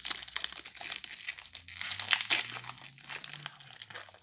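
Foil Pokémon booster-pack wrapper crinkling and tearing in the hands as it is opened and the cards are pulled out: a busy run of irregular crackles.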